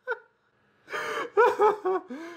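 A person laughing breathlessly: a short laugh trails off at the start, a brief pause follows, and about a second in gasping, wheezy laughter starts up again.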